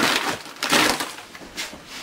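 Broken concrete and crumbling cinder block being scraped and shifted at the foot of a basement block wall, in a few short rough bursts. The first comes at the start, a second about two-thirds of a second in, and a faint one near the end.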